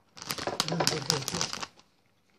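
Rapid crinkling and clicking, mixed with a voice, lasting about a second and a half and stopping shortly before the end.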